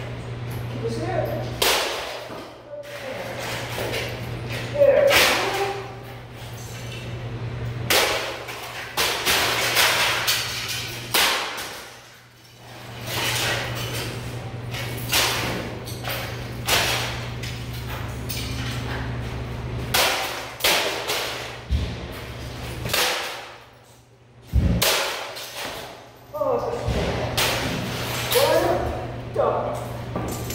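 Sledgehammer blows smashing objects on a wooden stump block: a long run of heavy, irregular impacts with crashes and clatter of breaking debris. A steady low hum runs underneath for much of it.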